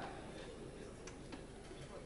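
Pause between sentences: faint room tone of a large hall, with a few faint clicks about halfway through.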